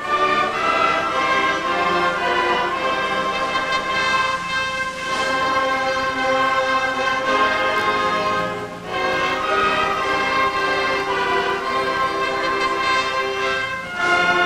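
School concert band and orchestra, brass and strings together, playing a slow piece in long held chords, with a short break between phrases about nine seconds in.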